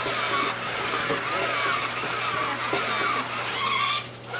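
Toy humanoid robot walking, its geared motors whining in a pitch that rises and falls over and over as the legs and body swing through each step.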